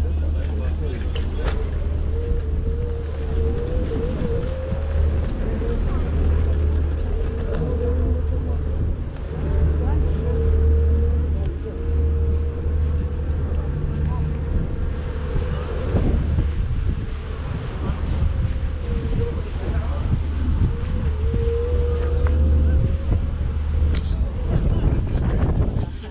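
A steady low engine drone, with people's voices in the background.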